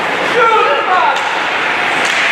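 Steady din of an ice-hockey rink, with a raised voice from the ice or stands calling out about half a second in, its pitch falling.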